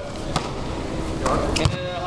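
A basketball bouncing on an indoor court: two sharp thuds, about a second and a quarter apart, over a background of players' voices.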